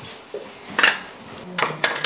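Three sharp clinks and clicks of hard kitchen items being handled, the first about a second in and two close together near the end.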